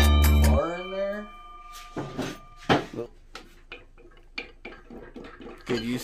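A music sting stops about half a second in. Then come scattered light metal clinks and knocks from tools and parts on a stripped-down Honda F23A1 engine block as the main bearing girdle is worked loose.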